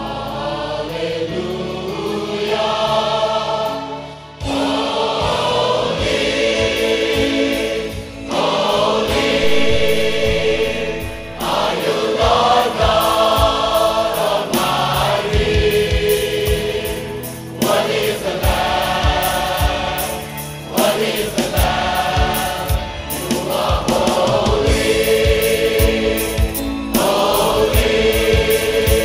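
Large mixed choir of men and women singing a worship song with instrumental backing; a steady beat comes in about four seconds in.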